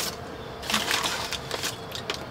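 Light handling noise: scattered clicks and rustles, busiest about a second in, over a faint steady hum.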